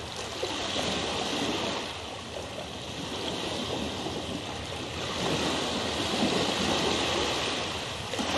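Rushing water ambience, a steady noise that swells and eases every few seconds.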